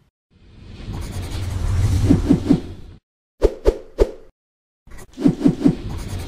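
Outro sound-effect sting: a swelling whoosh with a deep rumble builds for about three seconds and cuts off, then three sharp hits come in quick succession. After a short silence a second whoosh starts with a run of short falling blips.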